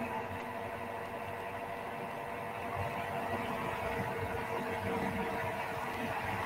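A steady mechanical hum with a faint hiss, unchanging throughout.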